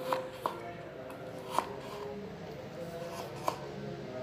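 Kitchen knife slicing fresh peeled turmeric root on a wooden cutting board: a few sharp knocks of the blade on the board at uneven intervals, about four in all.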